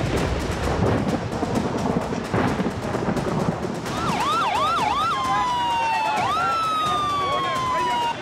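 Ambulance siren starting about halfway through: three quick rising-and-falling yelps, then a long, slowly falling tone, one more yelp and another long fall. Before it there is only rough, loud noise.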